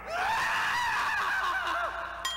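A cartoon character's high-pitched, wavering scream from the animated episode's soundtrack as Krillin is killed.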